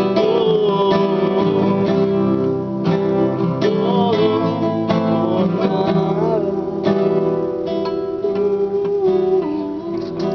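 Acoustic guitar playing: strummed chords with a wavering melody line over them.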